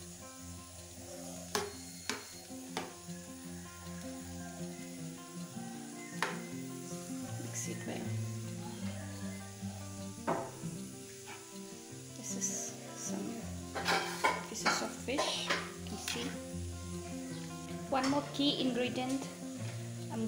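A spoon stirring a pan of simmering chilies, tomatoes and onion, with scattered clinks and knocks against the metal pan that come thicker in the second half. Background music plays throughout.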